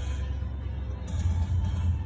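Low steady rumble inside a pickup truck's cab, with faint music.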